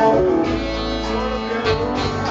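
Live band playing an instrumental passage between sung lines, with electric guitar to the fore over bass and drums.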